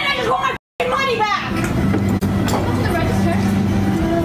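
Voices speaking from the played clip, not clearly worded, over a steady low hum. The sound cuts out completely for a moment about half a second in.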